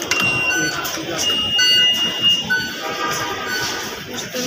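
A series of short, steady electronic tones at several different pitches, one of them held for about a second near the middle.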